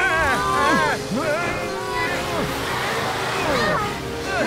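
Background music with cartoon voices straining and grunting in effort as ropes are hauled, in rising and falling pitch glides with no words.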